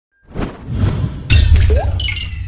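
Logo-sting sound effects: a swelling whoosh, then just past halfway a sudden heavy low hit with a bright, glassy shatter-like sparkle. A short rising tone and a falling high tone follow near the end.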